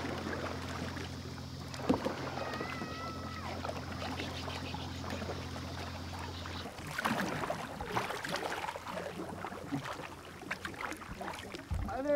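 Kayak paddles dipping and splashing in calm water, the strokes irregular and most noticeable in the second half. A steady low hum underlies the first half and cuts off abruptly about halfway, and a brief wavering whistle sounds early on.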